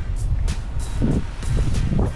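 Low, uneven rumble of wind on the microphone, with background music playing over it.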